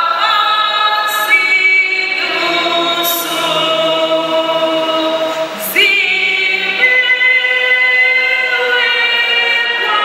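A group of voices singing a slow hymn together, in long held notes that change pitch every second or two.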